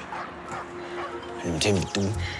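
A man's voice speaking emphatically, loudest near the end, over a steady, quiet background music underscore.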